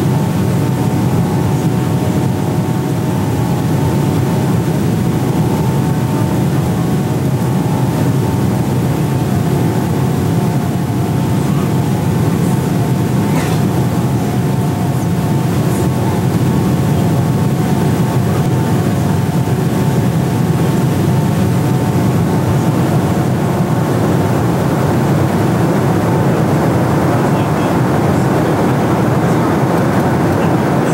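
Steady in-flight cabin noise of a passenger airliner: a loud, even low rush of engines and air, with a faint steady hum of tones in it that fades later on.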